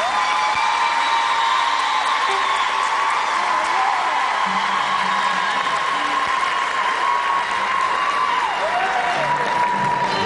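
Concert audience applauding and cheering at the end of a song, with orchestral music still sounding under the applause.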